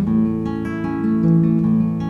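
Acoustic guitar played with plucked notes, a few new notes a second, each ringing on over the next.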